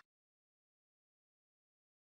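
Silence.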